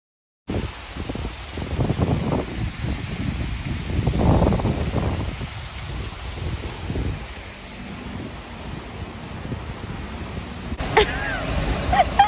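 Wind buffeting a phone's microphone on a rainy city street, over the hiss of street noise. It opens with half a second of silence, and a voice comes in near the end.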